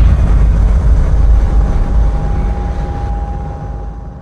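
Low, rumbling boom at the tail of an outro music sting, fading out slowly.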